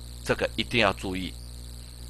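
A voice speaking a few words for about a second, over a steady low electrical hum and a faint steady high-pitched whine in the recording.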